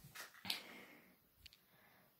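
Near silence in a small tiled room, broken by a few faint short clicks of a hand-held phone being handled, the clearest about half a second in.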